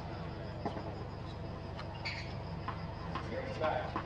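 Outdoor tennis court ambience: a steady low hum with faint voices and a few faint knocks.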